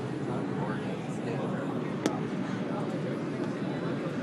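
People talking over the steady rumble inside an R-142 subway car, with one sharp click about two seconds in.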